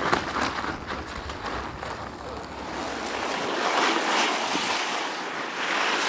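Rushing noise of ice cross skates carving and scraping on an ice track, mixed with wind, swelling about four seconds in and again near the end.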